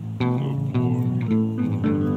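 Music with plucked guitar and bass notes, a new note starting every fraction of a second.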